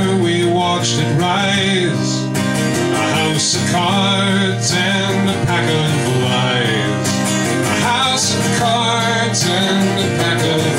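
A man singing a folk song over his own steadily strummed acoustic guitar.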